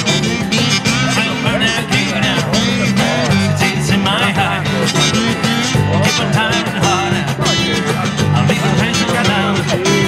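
Live southern rock band playing: strummed acoustic guitars over electric bass and cajón, with a melody line that bends in pitch above them.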